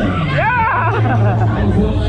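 Loud fairground music mixed with voices and crowd babble. About half a second in, one voice gives a rising, wavering cry.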